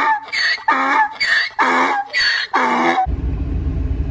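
An edited-in vocal clip: six short, evenly spaced voiced bursts, with no cabin background under them. About three seconds in, the clip cuts off and a steady low vehicle-cabin rumble comes back.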